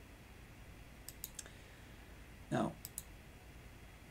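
Sharp clicks at the computer as the presentation slide is advanced: three quick clicks about a second in, then two more just before three seconds.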